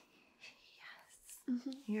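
A woman's soft, breathy whispering, then her voice becoming clear as she starts to speak near the end.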